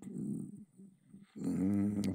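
A man's hesitating voice in the middle of a question: a short low mumble, a pause of under a second, then a drawn-out "uh" that runs on into his next words.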